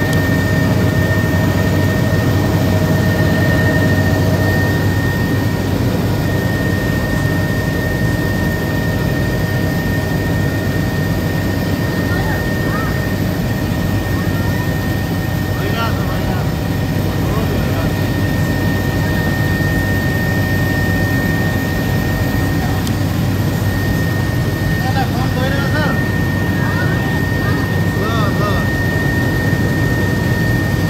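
Helicopter engine and rotor noise heard from inside the cabin in flight: a loud, steady drone with a constant high-pitched whine over it.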